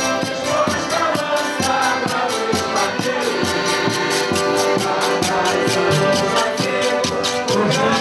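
Portuguese folk music played live: a group of men and a woman singing together to two piano accordions, over a quick, steady drum beat.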